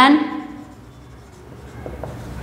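Marker pen writing on a whiteboard: soft scratching strokes as a word is written out.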